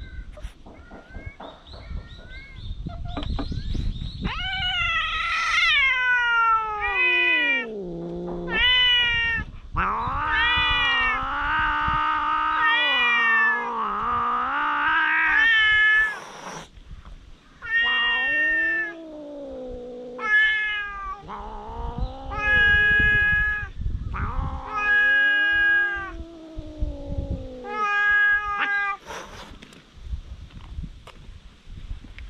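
Two stray cats yowling at each other in a fight: a long run of drawn-out, wavering yowls, one after another, some sliding far down in pitch, starting faint and growing loud a few seconds in.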